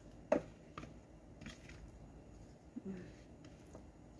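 A wooden spatula scraping and tapping a ceramic bowl, with one sharp knock just after the start and a few faint ticks after it, as a spice marinade is scraped out onto chicken and vegetables.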